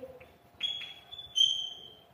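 Chalk squeaking on a blackboard during writing: two short high-pitched squeals, the first about half a second in, the second louder about a second and a half in and fading away.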